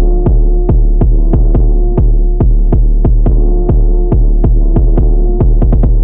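A hip hop beat playing without vocals: a loud, deep 808 bass under regular hi-hat ticks about four a second and a held synth melody. The hi-hats roll faster near the end.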